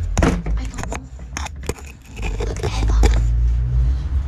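Clicks and scrapes from a bicycle's front wheel and fork being handled, a few sharp ones in the first two seconds, followed by a steady low rumble from about halfway through.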